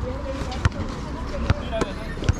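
A basketball bouncing on a concrete court: a few sharp thuds, irregularly spaced, over faint voices.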